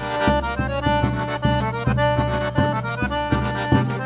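Forró pé de serra trio playing an instrumental passage: piano accordion holding and moving between notes over a steady beat of low zabumba bass-drum thumps, about two and a half a second, with triangle.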